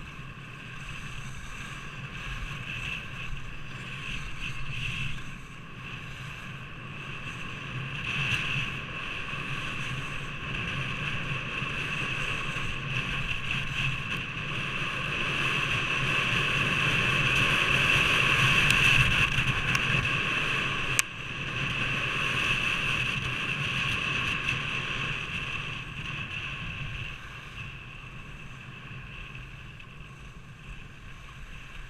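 Wind on an action camera's microphone and skis hissing and scraping over groomed snow during a descent. The noise swells to its loudest about two-thirds of the way through, then eases. A single sharp click comes just after the loudest point.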